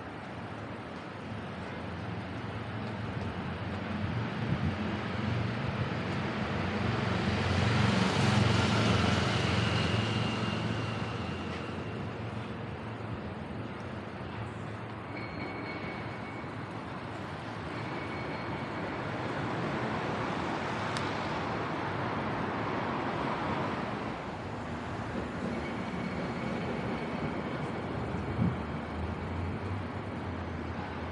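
Road traffic passing along a city street: a steady rumble and tyre noise, with one vehicle passing loudest about eight seconds in and another swell from about twenty seconds in.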